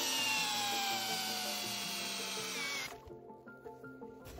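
Parkside Performance PSBSAP 20-Li C3 cordless drill in low gear (speed one) driving an M10 x 100 mm screw into a log. The motor's whine sinks steadily in pitch as the load builds, then cuts off about three seconds in.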